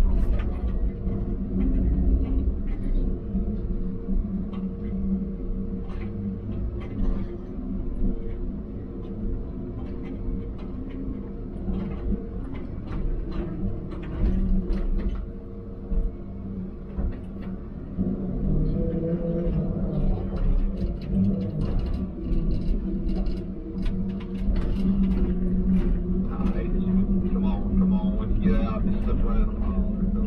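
Diesel engine and hydraulics of a John Deere grapple machine, heard from inside its cab, running steadily under load with scattered clanks and knocks. The engine note rises and gets louder about eighteen seconds in.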